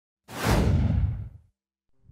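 A whoosh sound effect with a deep rumble underneath, coming in suddenly about a quarter second in and fading out by about a second and a half.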